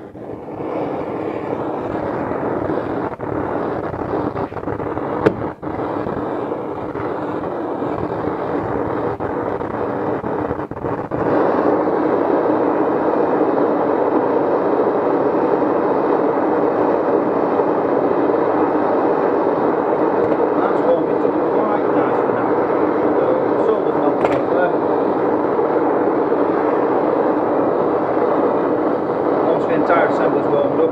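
Large gas blowtorch burning with a steady rushing flame, heating an aluminium housing for soldering; it grows louder about a third of the way in, with a sharp click or two before that.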